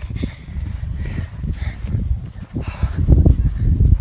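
Wind buffeting the microphone as a low, uneven rumble that grows louder in the last second, with footsteps trudging through soft sand.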